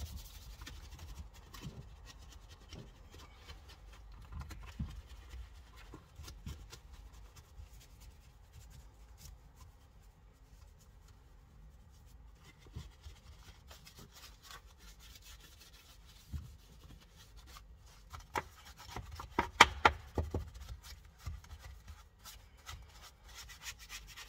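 Detailing brush scrubbing the plastic trim of a car's centre console around the gear lever, agitating cleaner: faint, quick bristle rubbing strokes, with a louder spell of brisk scrubbing about three quarters of the way through.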